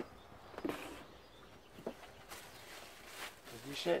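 A plastic carrier bag full of empty cardboard boxes and packets rustling as it is set down and tipped out onto a table, with a sharp knock a little before the main rustle.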